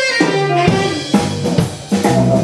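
A live rock/jazz band playing, with the drum kit's snare and bass drum prominent over electric guitar and bass guitar.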